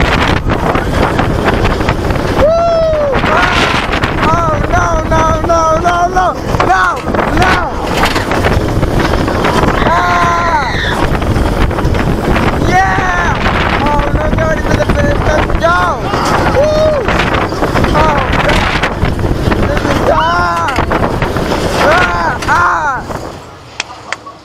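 Riders screaming and whooping over the loud rush of wind on the microphone and the rumble of a steel-on-wood hybrid roller coaster train running the track. The noise drops off sharply near the end as the train reaches the brake run.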